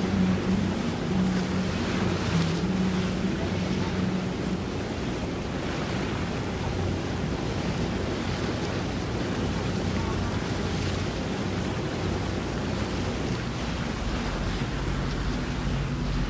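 Wind noise on the microphone over moving water, with the steady low hum of a boat engine running in the first few seconds and again near the end.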